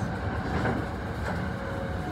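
Steady running noise heard inside a Kintetsu commuter train: an even rumble of the train running on the rails, with the last syllable of a recorded onboard announcement at the very start.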